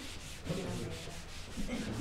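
Felt whiteboard eraser rubbing across a whiteboard in quick, repeated back-and-forth strokes as the writing is wiped off.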